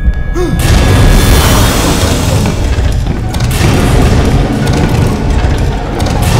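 Loud horror film score with deep booms and crashing noise, swelling to full strength about half a second in and staying dense and heavy in the bass.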